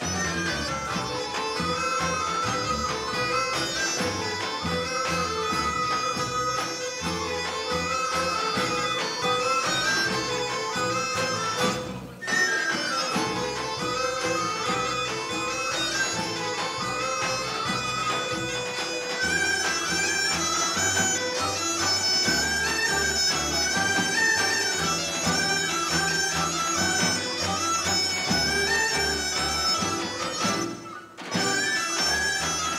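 Bulgarian folk dance music: a reedy wind instrument plays the melody over a steady low beat. The music breaks off briefly about twelve seconds in and a new tune starts.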